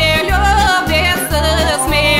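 A woman singing a Bulgarian song, her voice wavering with vibrato, over band accompaniment with a steady beat of bass notes.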